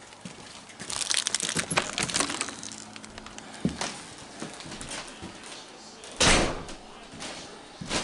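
Light clicks and rustling of someone coming in through a doorway, then a door shut with a short, loud rush of noise about six seconds in.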